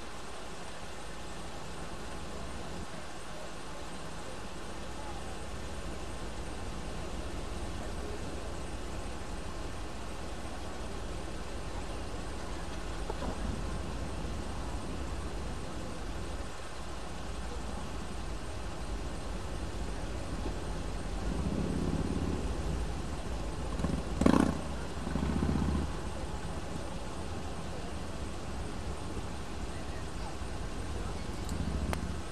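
Steady low outdoor rumble, with a few louder passages a little past twenty seconds and one sharp knock about twenty-four seconds in.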